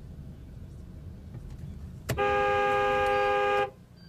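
A car horn sounds one long steady blast of about a second and a half, over the low rumble of the car driving. It is a warning at a car pulling out across the road ahead.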